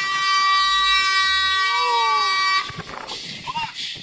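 Truck air horn sounding one long, loud, steady blast that cuts off suddenly about two and a half seconds in. A brief tone rising and falling in pitch passes through it near the middle.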